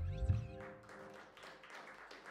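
A jazz band's held final chord, with saxophones, electric bass and drums, ends about half a second in. It is followed by light, scattered audience clapping.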